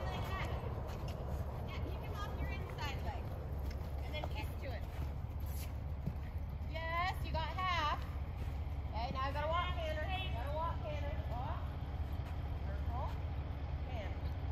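Indistinct, high-pitched voices in two spells, about halfway through and again a little later, over a steady low rumble.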